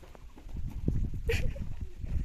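Irregular footsteps and handling knocks over a low rumble as the camera is carried along a dirt path, with a brief high call about halfway through.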